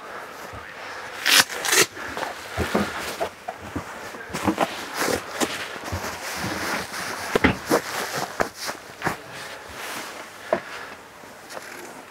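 Upholstered foam dinette cushions being lifted, set down and pushed into place to form a bed: a run of irregular soft thumps and fabric rustling.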